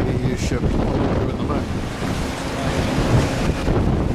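Strong wind buffeting the microphone: a loud, continuous low rumble with wind gusts, over water washing against the quay.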